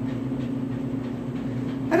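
A steady low mechanical hum with a faint hiss above it, holding one unchanging pitch throughout.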